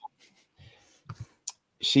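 A pause in a man's talk holding a few faint clicks, the sharpest about one and a half seconds in, before he speaks again near the end.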